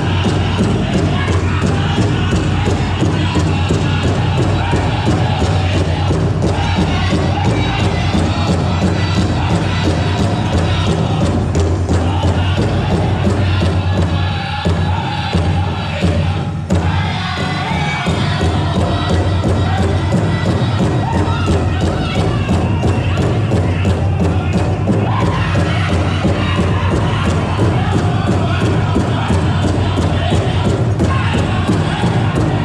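Live powwow drum group playing a fast fancy dance song: a large powwow drum struck in a quick steady beat, a few beats a second, under a chorus of high-pitched powwow singing. The sound thins briefly about halfway through, then the drum and singing carry on.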